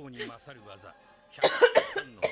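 A person coughing several times in quick succession about a second and a half in, loud and harsh, after quieter speech.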